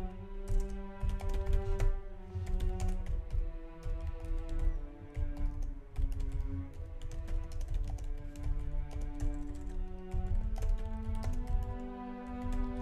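Typing on a computer keyboard, irregular runs of keystroke clicks, over background music of held notes.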